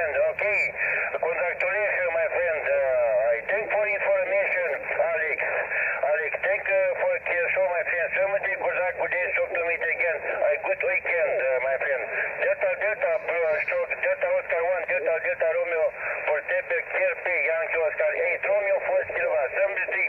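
A distant amateur station's voice received on single sideband through a Yaesu FT-817 transceiver's speaker on the 20 m band: continuous talk with the thin, narrow sound of SSB radio audio.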